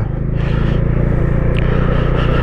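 Motorcycle engine running steadily at cruising speed, with wind and road noise, heard from on the bike itself.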